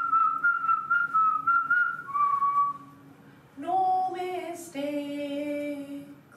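Someone whistles a short run of high, slightly wavering notes for about two and a half seconds, then a woman sings two long held notes.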